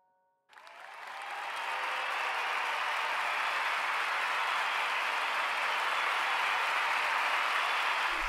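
Applause swelling up over about a second and then holding steady. It follows the last held piano chord of an opera aria, which cuts off about half a second in.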